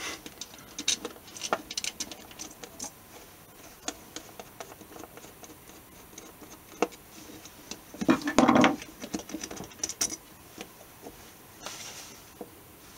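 Screwdriver backing out the pivot screws of a Strat-style tremolo bridge: scattered small metallic clicks and scratches of the tool and screws on the bridge plate. About eight seconds in there is a louder burst of handling noise as the bridge is worked loose.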